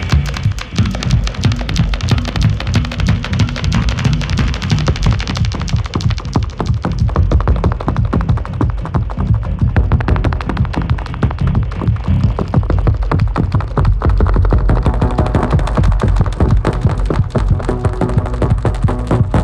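Live electroacoustic techno played on homemade piezo-amplified spring and metal-rod boxes: a dense stream of rapid metallic hits and clicks over a steady low bass.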